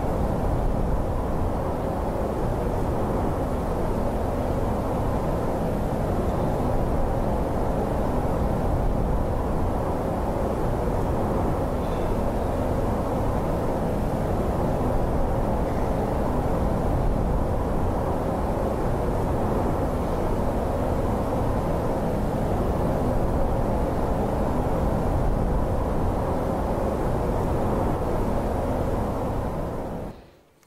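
Low, steady rumble of a glacier's calving face breaking apart and huge icebergs rolling over, with no distinct cracks standing out. It cuts off suddenly at the end.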